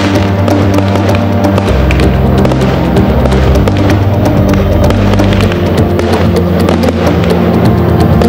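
Instrumental music with sustained bass notes, its bass changing pitch twice. Over it come the crackles and bangs of aerial firework shells bursting.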